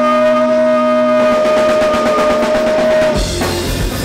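Punk rock band playing live: a fast drum roll builds under one long held note, then the full band comes in about three seconds in with drums, bass and distorted guitar.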